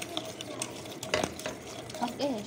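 Wire whisk stirring runny cake batter in a metal bowl, with irregular clicks and scrapes of wire on metal and one louder knock about a second in.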